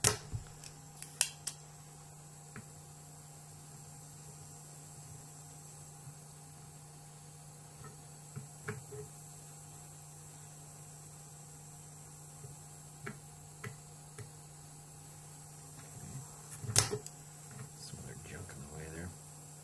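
Spring-loaded desoldering pump (solder sucker) working on a circuit board's solder joints: a couple of sharp clicks near the start, a few faint ticks, then one loud snap of the plunger firing near the end. A steady low hum runs underneath.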